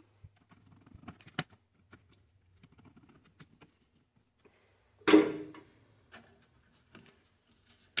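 A screwdriver working the screw terminals of a metal-cased switching power supply as wires are fastened in: faint, scattered clicks and light scrapes, with one sharper click about a second and a half in.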